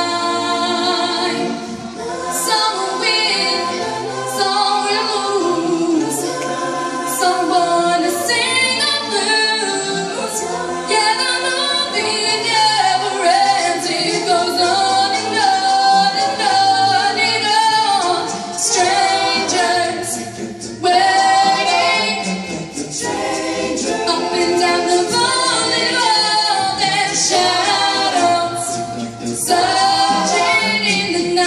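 An a cappella vocal ensemble singing in harmony, several voices together over a low bass part, with no instruments.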